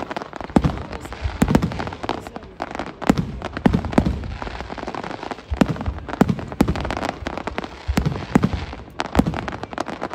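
Aerial fireworks display: a dense, unbroken run of sharp bangs from shells bursting several times a second, over continuous crackling from the bursting stars.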